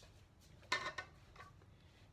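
Two brief light knocks of kitchenware, a bowl or utensil being handled on the counter. The first, about three quarters of a second in, is the louder.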